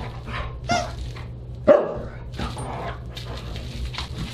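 Siberian husky giving short, playful barks and yips, about four in all, the loudest a little under two seconds in.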